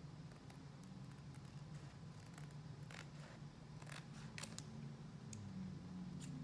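Scissors cutting watercolor paper: a few faint, separate snips, the clearest about three and four seconds in, over a low steady hum.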